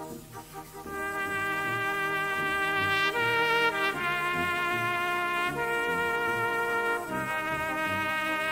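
A solo cornet plays a slow melody of long held notes over brass band accompaniment. After a brief lull in the first second, the cornet comes in and changes note every second or so.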